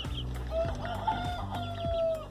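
Domestic chickens clucking, with one long drawn-out call held at a steady pitch from about half a second in to the end.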